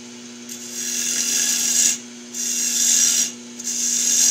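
Turning tool cutting into a wooden whorl spinning on a wood lathe, in three passes of one to two seconds each with short breaks between, throwing off shavings. A steady hum runs underneath.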